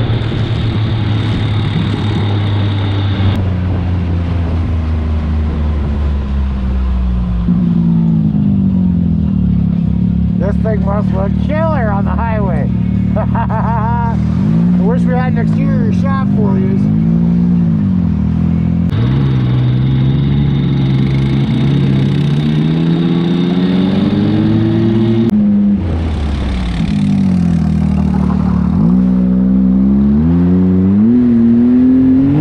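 Can-Am Maverick X3 Turbo side-by-side's turbocharged three-cylinder engine running at road speed, heard from the cab. Its pitch rises and falls with the throttle, and the sound changes abruptly several times. A voice is heard briefly in the middle.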